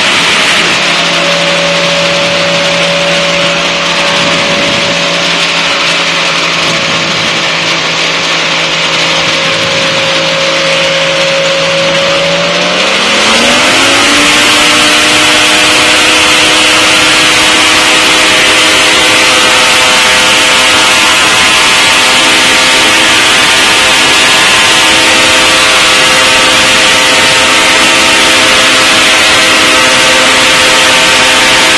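Challenger light-sport aircraft's liquid-cooled engine and propeller running at low power, then throttled up about twelve seconds in, the pitch gliding quickly up to full takeoff power and holding steady and louder.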